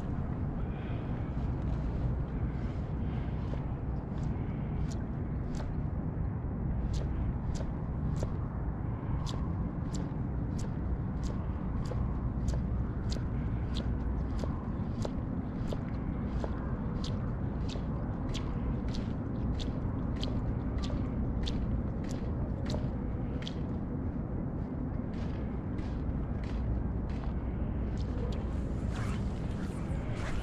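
Fly line being stripped in short, quick pulls to work a topwater fly, making a regular series of sharp ticks about two a second that start a few seconds in and stop several seconds before the end, over a low steady rumble.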